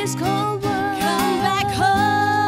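Female vocals singing long held, gliding notes with no clear words, over a guitar-led pop ballad backing with steady sustained low tones.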